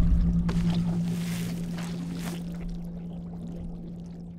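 Cartoon underwater sound effect: a deep rumble with a steady low hum, loudest at first and slowly fading away.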